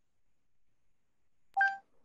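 A single short electronic beep, one steady tone lasting about a quarter of a second, about a second and a half in; otherwise near silence.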